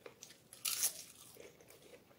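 A bite into a crisp papad, with one loud crunch a little over half a second in, followed by softer chewing and crackling of the papad in the mouth.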